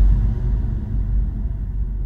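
A low, steady drone, strongest in the deep bass, slowly fading.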